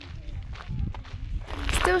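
Footsteps of people walking along a path, with faint voices of other walkers behind them. Near the end the sound gets louder and a voice starts.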